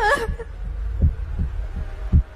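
Heartbeat-like low thuds over a continuous deep rumble: a suspense sound effect laid under a pause.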